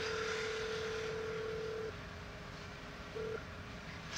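Telephone ringback tone in a phone earpiece as a call rings out: one steady tone for about two seconds, then a short blip of the same tone about three seconds in.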